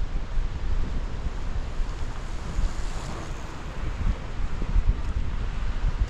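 Wind buffeting the microphone in irregular gusts, a low rumbling rush over a steady hiss.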